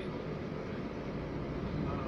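Steady engine and road noise of a moving bus, heard from inside the passenger cabin.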